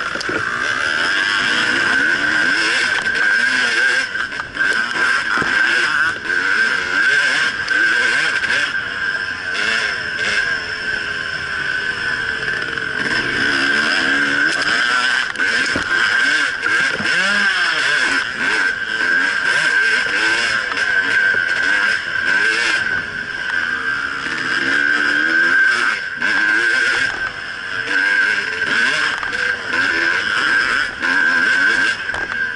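Two-stroke enduro dirt bike engine heard up close from a camera mounted on the bike, its pitch rising and falling as the throttle is worked over the trail. A steady high whine sits over it throughout.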